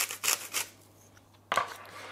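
Salt being added to raw minced beef in a mixing bowl: a quick run of short scratchy rasps, then a knock about one and a half seconds in.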